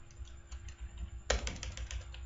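Computer keyboard typing: a few light keystrokes, then a quick run of keystrokes starting just over a second in.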